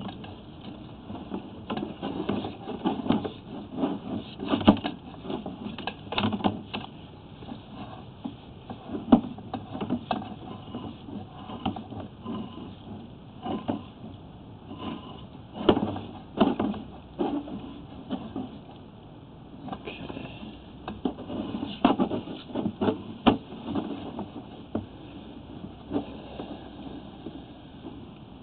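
Irregular knocks, clicks and rattles from a sewer inspection camera's push cable as it is fed by hand into a four-inch ABS drain line. The knocks come in uneven clusters over a low steady background.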